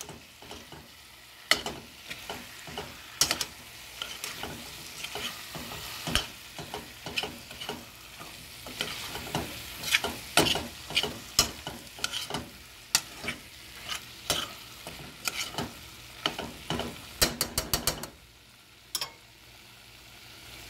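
A metal spoon stirs chicken pieces through a thick masala in a stainless steel pot, knocking against the pot's sides and bottom again and again over a steady sizzle of frying. Near the end a quick run of taps comes, and then it goes quieter.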